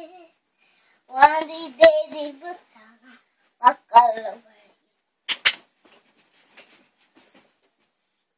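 A young girl's voice in two short phrases, sung or chanted. A sharp knock comes about two seconds in, and a short sharp burst about five seconds in.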